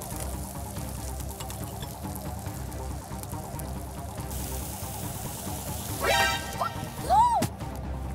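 Background music bed under faint kitchen clatter, with a hiss coming in about halfway through. About six seconds in, comic sound effects play: a quick warbling glide, then one short rising-and-falling whistle.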